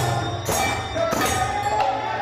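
Bengali kirtan music: khol drums played in rhythm, with metal percussion strikes about every 0.6 seconds over a held, slowly gliding melody line.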